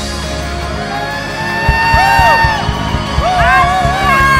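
Live band playing a song: bass and keys hold under a melody line that slides between notes, and drum kit strikes come in about halfway through.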